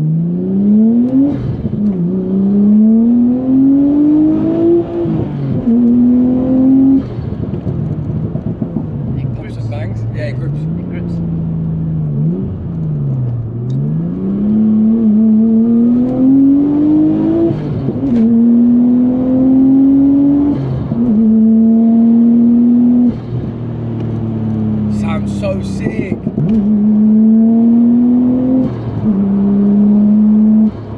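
Tuned Nissan Skyline R34 GT-T's turbocharged RB25DET straight-six, built to about 500 horsepower, heard from inside the cabin as the car pulls through the gears. The engine note climbs and drops back at each gear change, falls and rises again off and on the throttle, then holds steadier at a cruise, with brief hissing sounds about a third of the way in and again near the end.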